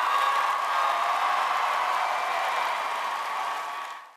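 Large audience applauding and cheering, fading out near the end.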